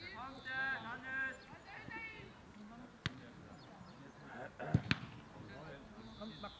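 Shouted calls in the first two seconds, then a single sharp knock about three seconds in. Near the end come two loud thuds in quick succession, the sound of a football being kicked.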